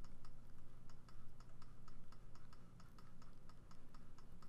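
Rapid series of light computer mouse clicks, about five a second, as a brush is dabbed onto a layer mask, over a low steady hum.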